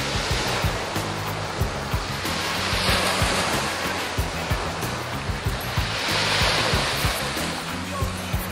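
Small waves breaking and washing up on a sandy beach, the surf swelling and fading every few seconds, with background music carrying a steady bass beat underneath.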